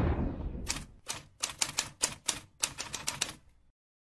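Typewriter keystroke sound effect: about a dozen sharp, unevenly spaced clacks over roughly three seconds. It opens on the fading tail of a deep hit.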